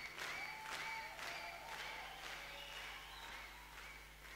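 Audience applause fading out, the claps growing fainter and sparser. Faint short high-pitched tones sound over it.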